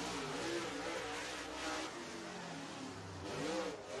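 Dirt super late model race car's V8 engine at full speed on a solo qualifying lap. The engine note wavers up and down as the car goes around the oval, with a rise and fall near the end.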